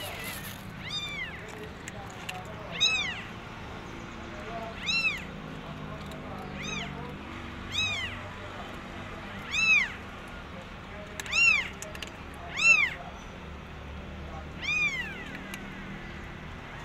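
Newborn kittens mewing: about nine short, high-pitched cries, each rising and then falling in pitch, spaced one to two seconds apart.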